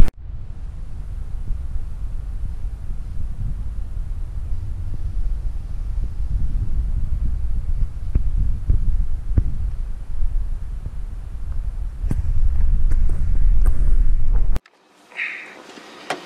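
Wind buffeting an outdoor camera microphone: a steady, gusting low rumble that cuts off abruptly near the end.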